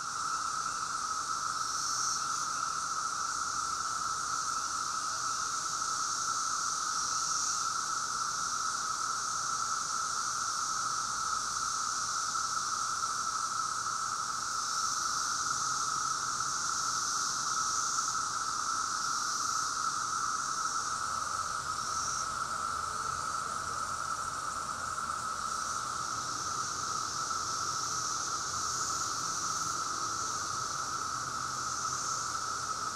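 Chorus of Brood X periodical cicadas: a steady, unbroken drone with a higher hiss above it that swells and fades every few seconds.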